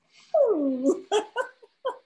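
A woman laughing: one drawn-out cry of laughter falling in pitch, then a few short laughs.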